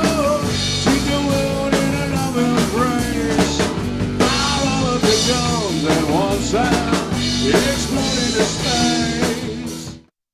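Live rock band playing an instrumental passage: a drum kit, bass and keyboards under a lead line that bends up and down in pitch. The sound fades away and cuts off at the very end.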